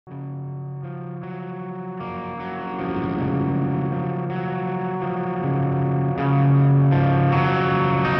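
Electric guitar played through a Fuzzrocious Blast Furnace fuzz pedal: held, distorted notes that ring on and build up into a thick chord, growing louder after a few seconds.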